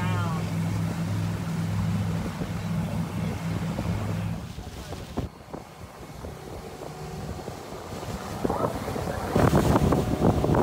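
Steady low drone of a motorboat engine that cuts off about four seconds in, followed by wind buffeting the microphone, which grows louder near the end.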